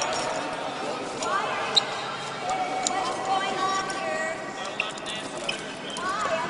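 Overlapping, unintelligible voices of several people during a scuffle on a stone floor, with sharp knocks and clicks of bodies and gear; the loudest knock comes a little under two seconds in.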